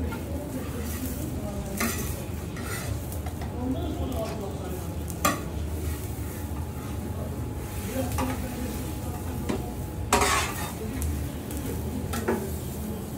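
Knife blade scraping and sliding across a hot steel griddle under a toasted sandwich, over a steady sizzle of the toast frying. The scrapes come every few seconds, the loudest and longest about ten seconds in.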